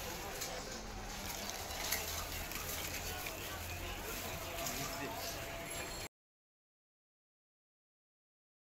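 Outdoor street-stall ambience with voices talking and general street noise, with a few light clicks. It cuts off abruptly to silence about six seconds in.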